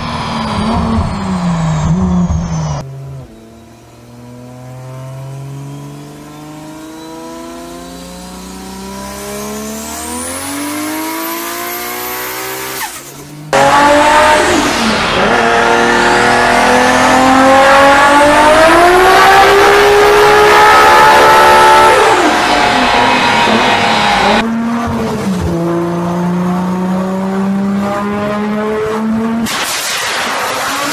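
Several Toyota Supra turbocharged straight-six engines on a chassis dyno, edited back to back with abrupt cuts. After a quieter pull that rises slowly in pitch, the loudest run climbs steadily in revs for several seconds and then drops off, followed by a steadier lower engine note.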